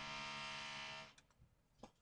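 A steady pitched hum that holds one pitch and stops about a second in, followed by a few light clicks of keyboard keys as code is typed.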